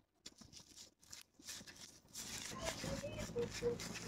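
Thin plastic nursery pot crackling and clicking as gloved hands squeeze and handle it to loosen the plant for removal. The handling grows louder and denser about halfway through.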